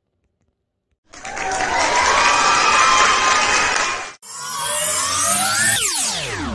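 About a second of silence, then roughly three seconds of crowd cheering and shouting. It cuts off and an electronic outro sting begins, with a steep falling sweep near the end.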